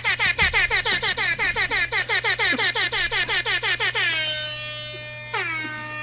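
DJ air horn sound effect: a fast stutter of short blasts, about seven a second, then two longer blasts that slide down in pitch near the end.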